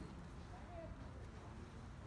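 Faint, indistinct chatter of people in a large indoor sports hall, over a low steady rumble.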